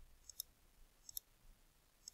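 Computer mouse button clicking: two faint pairs of short clicks, about a second apart, over near silence.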